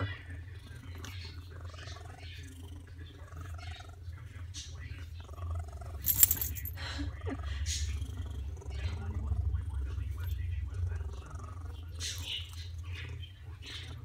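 Domestic tabby cat purring close to the microphone while being stroked, a steady low rumble that grows stronger in the middle. A brief sharp crackle about six seconds in.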